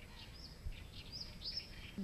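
Faint birds chirping: a scatter of short, high calls, several of them sliding in pitch, over a low, steady background rumble.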